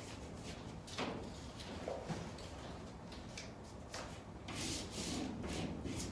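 Blue painter's tape being peeled off and repositioned on a vinyl decal's paper transfer sheet on a glass door: paper and tape rubbing and rustling against the glass. There are sharp clicks about a second and four seconds in, and a longer scratchy rustle near the end.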